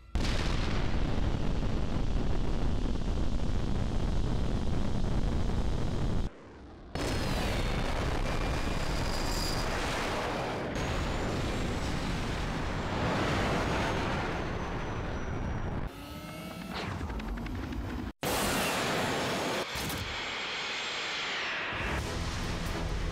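Rocket engines firing in a series of launches: a continuous roaring blast broken by brief drop-outs about six and eighteen seconds in, with some rising and falling whooshes.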